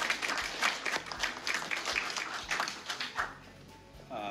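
A small group of people applauding by hand, the clapping dying away about three seconds in.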